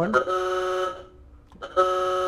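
1931 Ford Model A's horn sounded twice from the steering-wheel button: two short, steady, single-pitched honks, the second starting near the end.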